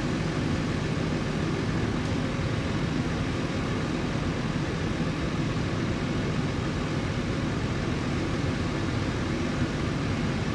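Steady outdoor background noise: an unbroken low rumble with hiss, without separate events, of the kind that distant traffic makes.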